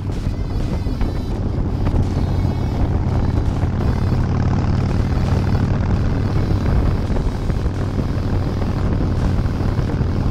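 Cruiser motorcycle engine running steadily at road speed, with wind rushing over the microphone.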